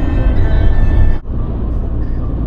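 Background music over the steady low rumble of a camper driving on the road. About a second in, the music cuts off suddenly and only the low driving rumble remains.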